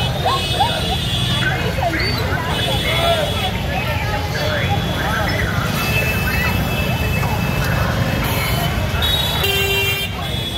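Busy street crowd: many voices talking at once over a steady rumble of motorbike and scooter traffic, with vehicle horns tooting again and again.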